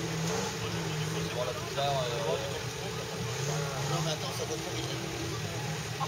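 Off-road trial 4x4's engine running steadily at low revs as it crawls down a steep dirt slope, with people talking in the background.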